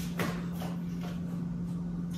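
A few faint taps and rustles of a paper word card being handled and set against a chalkboard, over a steady low hum.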